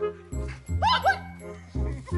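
Background music, and about a second in a dog gives two short, high barks.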